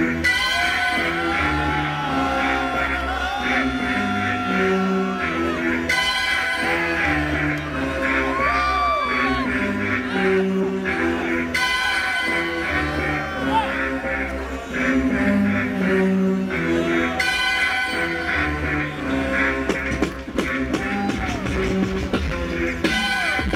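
A live DJ set played from turntables and a mixer through a sound system. A steady bass line runs under a melody that bends in pitch, and the phrases change about every five or six seconds.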